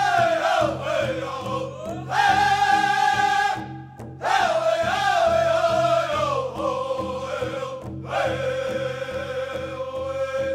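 A powwow drum group singing in unison: held high phrases that slide down in pitch, each new phrase starting high again, over a steady drumbeat.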